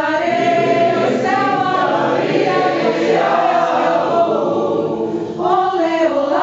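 Mixed choir of women's and men's voices singing a maracatu a cappella, holding long notes, with a new phrase entering near the end.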